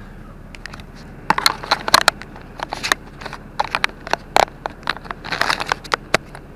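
Irregular clicks and knocks of a small camera being handled and turned on its mount, over a low steady hum in the truck cab.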